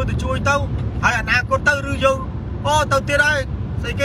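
A man talking inside a car cabin, over a steady low rumble of car noise.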